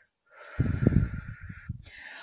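A person's breath blowing close to the microphone: a rough, unpitched puff of air that starts about half a second in and fades away over about a second.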